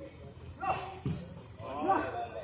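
Footballers shouting short calls during play: one falling shout just after half a second in and another near the end, with a dull thud between them.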